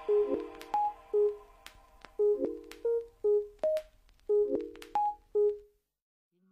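Background music: a sparse run of about a dozen short, clipped notes, each starting with a click and dying away quickly, most on one low pitch with a few higher ones. The music stops shortly before the end.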